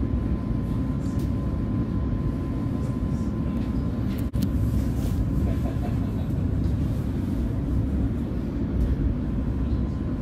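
Oslo Metro MX3000 train running, heard from inside the carriage: a steady low rumble of wheels on rail with a thin steady whine above it. The sound drops out very briefly about four seconds in.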